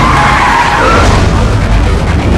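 Car tyres screeching in a skid: a high, wavering squeal through about the first second, over a loud low rumble.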